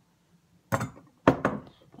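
Two sharp knocks about half a second apart, the second louder: items being set down or handled on a kitchen counter.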